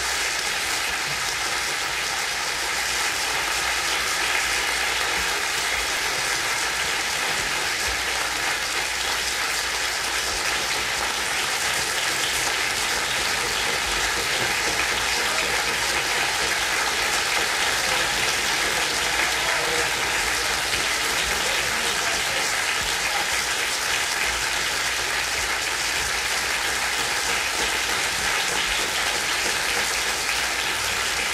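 Audience applauding steadily, a dense, even clapping with no pause.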